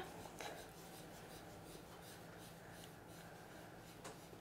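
Faint, soft rubbing of a foam ink-blending brush worked repeatedly over cardstock, blending Distress Oxide ink.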